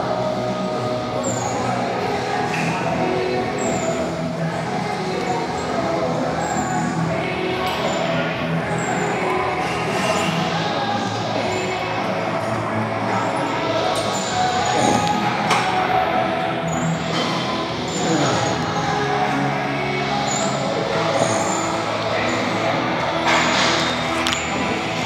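Background music playing steadily, with a short high accent repeating about every second and a half.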